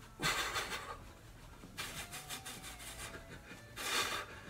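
A man breathing hard during a running arm-swing drill: three noisy breaths about two seconds apart, the first two close to a second long, the last shorter. He is breathing like this from effort, huffing and puffing.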